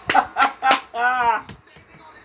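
A man clapping his hands three times in quick succession while laughing excitedly.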